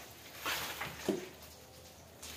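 Brief rustle and clatter of food packaging being handled in a kitchen: a short noisy rustle about half a second in, then a short sharp knock about a second in.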